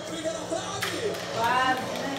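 Television broadcast of a football match heard across a room: stadium crowd noise with a voice rising through it, and a brief rustle just under a second in.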